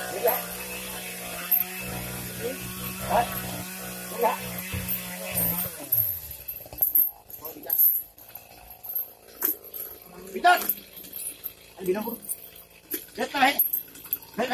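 A steady engine or motor hum that winds down in pitch and stops about five and a half seconds in, followed by scattered short knocks.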